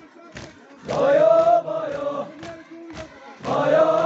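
Male mourners chanting a Muharram lament in unison: one long chanted phrase begins about a second in and another near the end. Sharp, regular slaps of hands beating on chests (matam) fall in the gaps between the phrases.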